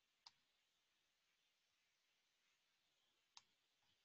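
Two faint computer mouse clicks about three seconds apart against near silence.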